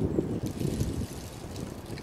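Wind buffeting the microphone, a steady low rumble with a faint crackle of rustling above it.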